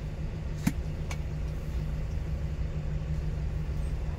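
Delivery vehicle's engine idling steadily, heard from inside the cab while it waits at a traffic signal, with one sharp click a little under a second in and a fainter click just after.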